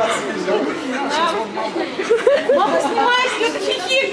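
Indistinct talking of several voices at once, in a large hall.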